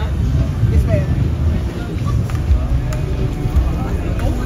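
Audi A7 engine idling close by, a steady low rumble, under the chatter of people on a busy street.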